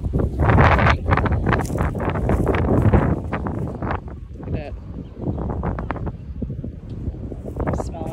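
Wind buffeting the phone's microphone in gusts, loudest in the first three seconds, then easing.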